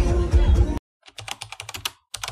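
Music and crowd noise that cut off abruptly under a second in. After a short silence comes a quick run of computer-keyboard typing clicks, a typing sound effect for text appearing on screen.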